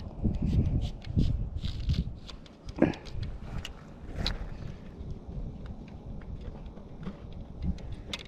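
Wooden cross-style ice-fishing tip-up being lifted from the hole and handled: scattered light knocks and clicks over a low rumble, with one short louder sound just under three seconds in.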